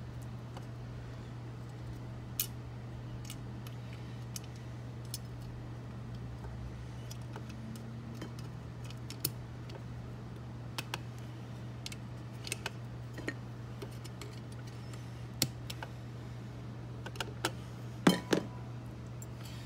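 Small metallic clicks and taps of the internal parts of an antique double bit mortise lock being handled and fitted, scattered irregularly and coming closer together near the end, over a steady low hum.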